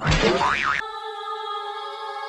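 A short comic sound effect, a boing whose pitch swoops up and back down, lasting under a second. About a second in, a steady held synthesizer chord of background music takes over.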